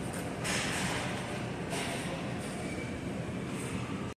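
Shopping cart rolling steadily along a store floor, its wheels and wire basket giving a continuous rumble.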